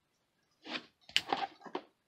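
Rigid plastic toploader card holders clicking and scraping against each other as they are handled: a handful of short clacks and rubs starting just over half a second in, the sharpest about a second in.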